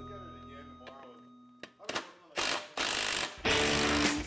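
Cordless DeWalt impact driver run in about four short bursts from about two seconds in, backing out the T27 Torx bolts of a UTV seat slider.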